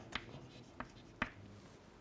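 Chalk writing on a blackboard: faint scraping with a few short, sharp taps, the loudest about a second and a quarter in.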